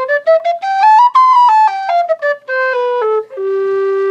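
Humphrey low G whistle played solo: a quick run of single notes climbing about an octave, then stepping back down below the starting note to a long held low note, showing the extra notes below C.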